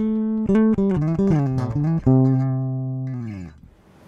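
G&L L-2000 Tribute four-string electric bass being played: a quick run of plucked notes, then one long note that rings on and dies away near the end.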